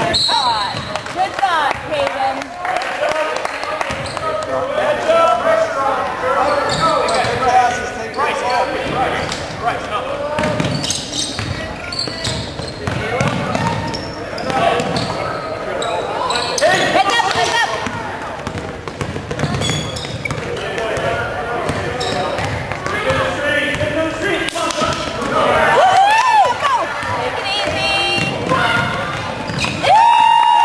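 Basketball bouncing on a hardwood gym floor as players dribble, over a background of spectators' chatter and shouts.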